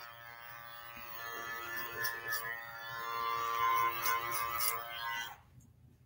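Electric hair clipper buzzing as it cuts clipper-over-comb to blend a fade, the hum swelling and fading in loudness as it moves over the hair, then cutting off suddenly near the end.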